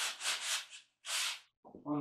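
Sandpaper rubbing back and forth on a wooden rifle stock's barrel channel in quick strokes, about five a second, easing off under a second in, then one longer stroke. The channel is being worked down so the barrel will seat in it.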